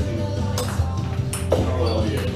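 A table tennis rally: a 44 mm Nittaku plastic ball clicks sharply off the paddles and table, a few separate hits, over steady background music.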